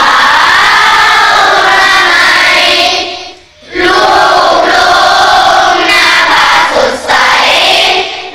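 A large group of schoolchildren's voices in unison, in long drawn-out phrases, with one short break about three and a half seconds in.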